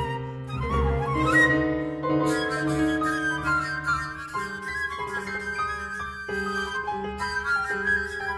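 Recorded flute and piano playing a contemporary chamber piece built from folk-melody fragments: the flute carries the melody with multiphonics and breathy attacks, while the piano echoes the melody in canon and plays drum-like rhythms in the left hand.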